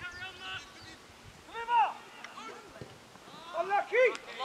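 Distant shouts and calls of players on a football pitch, too far off to make out words: one call stands out about halfway through, and more voices build up near the end.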